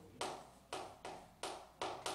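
Chalk strokes on a chalkboard as short lines are drawn: four quick strokes about half a second apart, each a sharp tap that trails off into a scrape.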